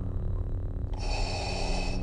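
Heavy breathing sound effect in two parts: a duller breath, then a hissier one starting about a second in, over a steady low hum.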